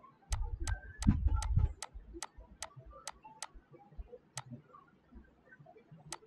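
A run of sharp computer input clicks, about two or three a second for the first three and a half seconds, then two more spaced out, while dots are being placed in a drawing program. A few low thumps come in the first two seconds.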